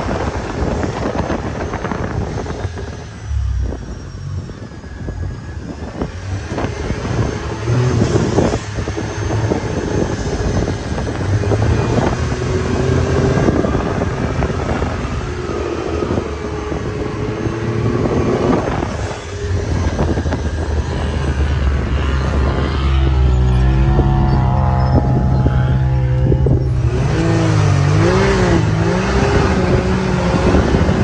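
Can-Am Maverick 1000 side-by-side's V-twin engine running under throttle through sand dunes, its pitch rising and falling as the driver works the throttle, heard from inside the open cab with wind noise.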